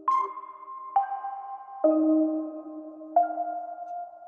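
BandLab's AI-generated chord track playing back on its own through a virtual instrument: four soft sustained chords, a new one struck roughly every second, each ringing on and fading into the next. The harmony sounds a little dissonant.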